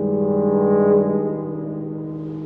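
Tuba trio playing a sustained chord in a concrete parking garage. It swells for about a second, then the lowest note drops out and the upper notes are held on a little softer.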